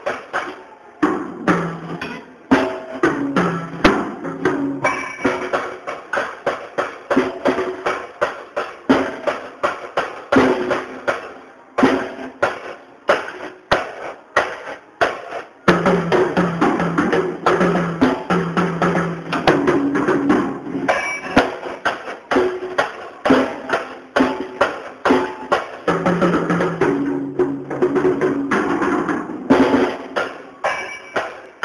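A small child playing a child-size drum kit, a dense, uneven run of drum and cymbal hits with a couple of brief pauses.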